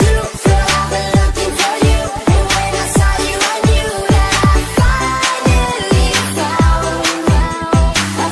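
Electronic dance-pop music: a steady beat of deep, pitch-falling kick drums under bass notes and held synth lines.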